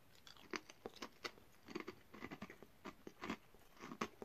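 A person chewing thick crinkle-cut potato crisps: a run of faint, irregular crunches.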